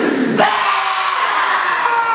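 Massed voices of a kapa haka group chanting and shouting a haka in unison, with a sharp accent about half a second in.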